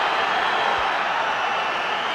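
Steady noise of a large football stadium crowd, an even hiss of many voices with no single sound standing out.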